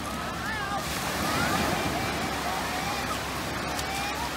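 Small waves washing up and sloshing over wet sand at the water's edge, a steady surf wash, with indistinct voices of a crowd in the background.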